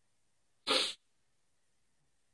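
A man's single short, sharp rush of breath, lasting about a quarter of a second, a little before one second in, against a quiet room.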